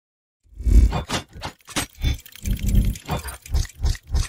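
Sound effects for an animated intro: a quick, irregular run of about eight heavy, mechanical-sounding hits and whooshes, the first and longest the loudest.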